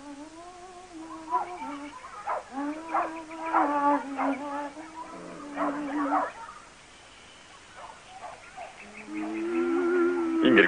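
A woman humming a slow tune in long held notes, broken by short, harsher sounds through the middle. The humming stops about six seconds in, and another held note starts near the end.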